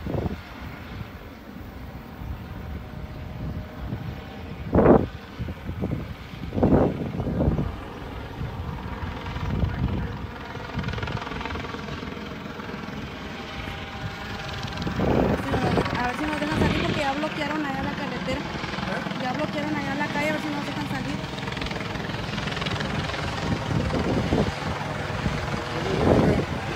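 Helicopter flying overhead: a steady drone of rotor and engine that grows louder about halfway through.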